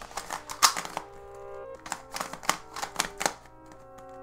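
A large 8.85 cm transparent YuXin 3x3 speed cube being turned fast during a timed solve: a rapid, uneven run of plastic clicks and clacks as the layers turn. Background music with held notes plays underneath.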